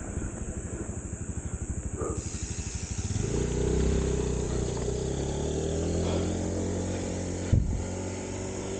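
A small motorcycle engine running close by. It starts as a low, rapid pulsing and settles into a steady engine note from about three seconds in. A single knock comes near the end.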